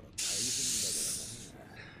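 A person hissing sharply through clenched teeth, a cringing "tsss" lasting just over a second, starting suddenly and fading out.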